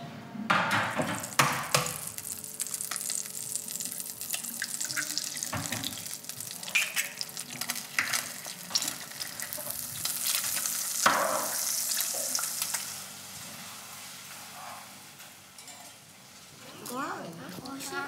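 An egg frying in a stainless steel pan on an electric stove, sizzling steadily, with several sharp knocks from the pan and utensils, the loudest a little past the middle.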